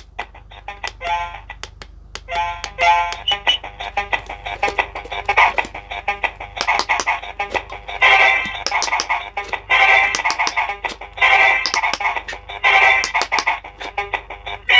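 Electronic Quick Push pop-it game toy playing short electronic beeps and jingles as its lit silicone buttons are pressed in quick succession, with a rapid clicking of the presses. The tones come in louder bursts a little past halfway.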